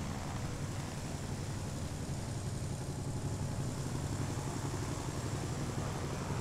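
Steady low drone of a light propeller aircraft's engine, heard from inside the cabin.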